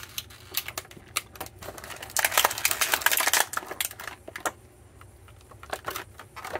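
Thin clear plastic packaging tray crinkling and clicking as it is handled and flexed to free an action figure, with a denser run of crackling in the middle and only scattered clicks near the end.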